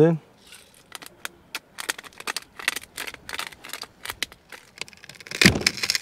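Small clicks and taps of utensils being handled at a table, then near the end a louder crackly crunch of a knife cutting through the crisp crust of a freshly baked focaccia.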